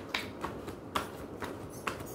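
A deck of tarot cards being shuffled by hand, giving a few irregular sharp clicks as the cards snap together, the loudest about a second in and near the end.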